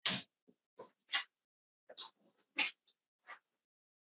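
Papers being handled and shuffled on a table: a string of short, separate rustles, about eight in four seconds.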